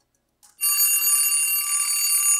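Bell alarm clock ringing continuously, starting suddenly about half a second in.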